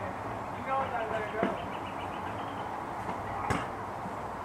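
Unintelligible voices calling out in the distance over a steady background hum, with a single sharp knock about three and a half seconds in.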